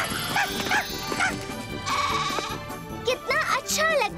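Background music with a cartoon goat bleating in the first second or so; a voice with pitch sliding up and down comes in near the end.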